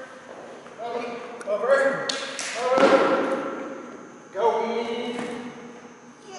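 Drawn-out voice calls, with one loud thump a little before the middle, echoing in a large hall.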